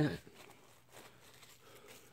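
A laugh trails off at the start, then faint crinkling and small ticks of plastic wrap on a bowl as it is lifted and handled.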